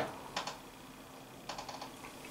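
A few faint, light clicks in a quiet room: a couple about half a second in, then a quick run of about four about one and a half seconds in.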